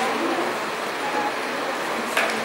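Steady background hiss of room noise with no clear events, only faint brief tones within it.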